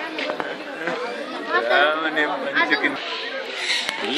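Several people's voices chattering, with high-pitched bird calls mixed in near the end.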